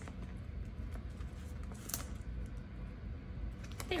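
Small plastic clicks and rustles as fingers work at the stiff top opening of a clear plastic binder pouch that won't open easily, one click a little sharper about two seconds in.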